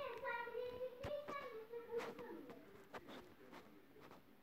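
A faint, high voice singing in the background: one held, gently wavering note lasting about three seconds before it fades out. A few soft clicks are heard alongside it.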